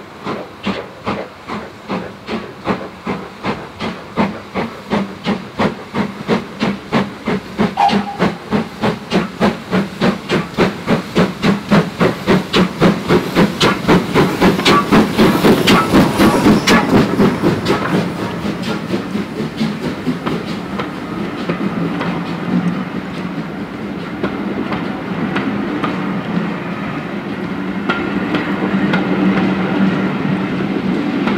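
GWR Small Prairie 2-6-2 tank engine No. 5542 working a train, its steam exhaust beating in a steady rhythm that grows louder as it approaches and is loudest as the locomotive passes about halfway through. The coaches then roll by with a steady rumble and clicking wheels over the rail joints.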